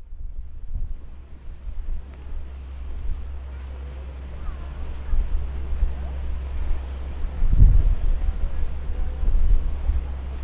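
Wind buffeting the microphone in gusts, a low rumble that swells strongest about three-quarters of the way through, over the wash of open sea water.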